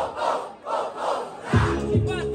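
Rap-battle crowd shouting and cheering in about three surges while the hip-hop beat is cut. The beat kicks back in about one and a half seconds in.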